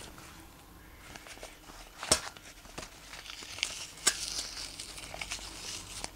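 Rubber-gloved hands handling a glass jar with a metal screw lid, unscrewing and opening it: light crinkling and rubbing, with two sharp clicks about two seconds and four seconds in.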